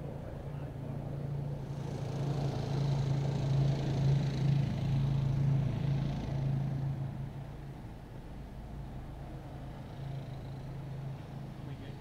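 A motor running steadily with a low hum, growing louder for a few seconds in the middle and then easing off.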